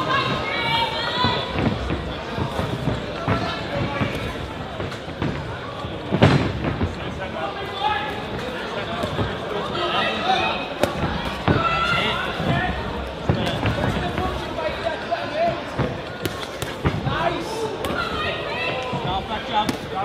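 Thuds of boxing gloves landing and feet moving on the ring canvas, with the strongest hit about six seconds in, over voices from the crowd and corners calling out throughout.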